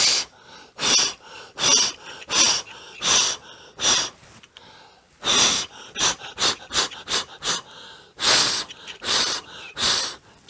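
A man blowing repeated sharp puffs of breath onto a small wooden thaumatrope to set it spinning. About six puffs come a little under a second apart, then a short pause, a quick run of shorter puffs, and three more strong ones.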